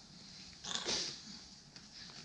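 A short, breathy sniff or exhale, about three-quarters of a second in, from one of the people on the couch.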